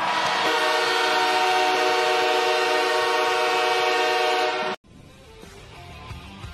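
Hockey arena's end-of-game horn sounding one long, steady blast that cuts off abruptly, marking the end of the game.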